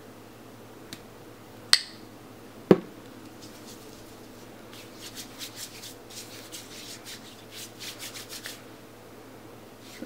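Two sharp clicks from a small plastic lotion bottle with a flip-top cap, then hands rubbing lotion together in quick, soft, repeated strokes for about five seconds.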